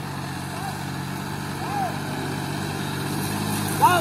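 John Deere tractor's diesel engine running steadily as it pulls a trailer loaded with about 17 tons of sugarcane, growing a little louder as it approaches. A man shouts near the end.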